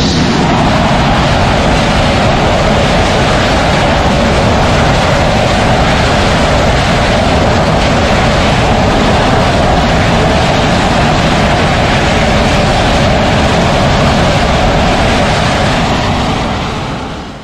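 Boeing EA-18G Growler's twin General Electric F414 turbofan jet engines at full takeoff power: a loud, steady jet roar through the takeoff roll and climb-out.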